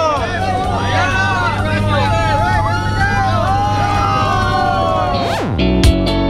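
Steady drone of a small jump plane's engine heard inside the cabin, under excited voices. About five seconds in, a quick downward sweep leads into strummed guitar music.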